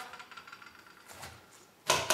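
Faint sounds of a chef's knife slicing through a pomegranate, ending with one sharp knock near the end as the blade comes down on the countertop.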